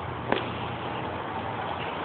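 Steady low hum of the 1992 Chrysler LeBaron's 3.0-litre V6 idling, with one sharp click about a third of a second in.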